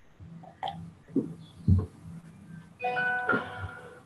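Electronic two-note chime, a video-call notification sound, about three seconds in. Before it there are two soft low thumps over a faint steady hum.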